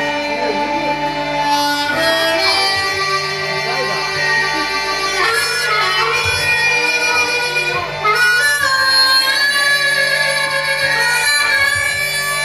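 Harmonica played live, with held chords and notes that bend in pitch; it gets louder about eight seconds in.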